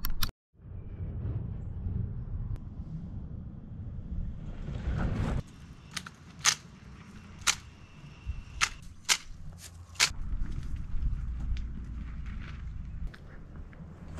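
A series of sharp strikes from a long-handled tool being swung, about six blows spaced roughly a second apart starting around five seconds in, over a low steady rumble.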